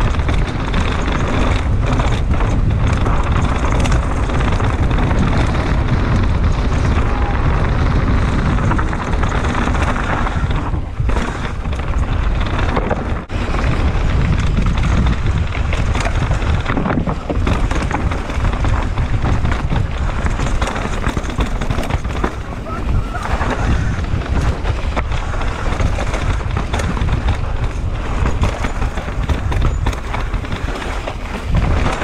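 Mountain bike descending a rough dirt trail at speed: tyres running over loose dirt and the bike rattling and knocking over bumps, under a heavy rumble of wind on the microphone.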